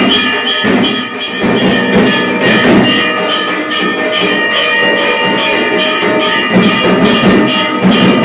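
Temple bells ringing rapidly and without a break, with several strokes a second, during the lamp-waving arati.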